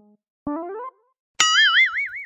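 Cartoon-style comedy sound effects: a short upward-sliding boing about half a second in, then a loud, high, warbling tone that wobbles up and down in pitch from about a second and a half in.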